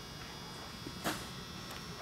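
Low, steady electrical hum with a faint high whine, and a brief soft hiss about a second in.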